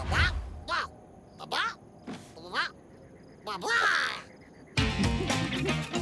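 A cartoon Rabbid's short squeaky voice sounds, about six separate calls that slide up and down in pitch. Music comes in near the end.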